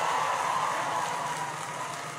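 Large crowd cheering and applauding, dying down toward the end.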